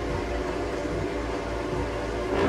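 A steady rumbling noise with several faint held tones beneath it, the kind of sound effect laid over a scene transition.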